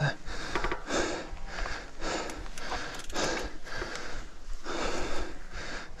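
Heavy, rapid panting of a mountain biker close to the microphone, one loud breath every half second to second: he is out of breath after a steep climb.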